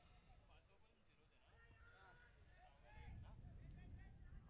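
Near silence, with faint distant voices.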